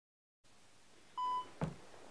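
Dead silence, then faint hiss. About a second in comes a single short electronic beep, a camera signalling that it has started recording, followed shortly by a dull knock of the camera being handled.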